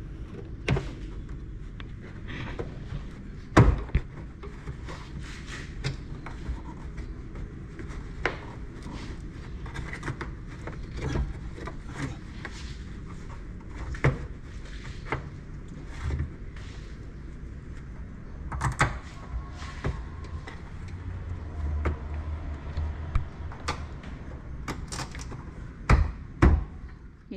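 Irregular knocks and clicks of tools and parts being handled during a vehicle repair, over a low background rumble, with one sharper knock about three and a half seconds in.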